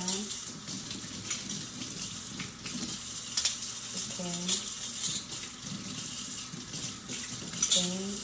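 Kitchen faucet running a thin steady stream into a stainless steel sink, with a few light clinks of cutlery being rinsed and handled under it.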